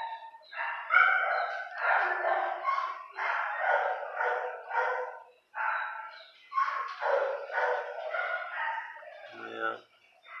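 Dog vocalizing: a run of short, high whines and grumbles, one after another.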